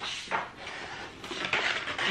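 Loose paper pages of an activity folder being handled and leafed through: rustling, with a light knock about a third of a second in and another about a second and a half in.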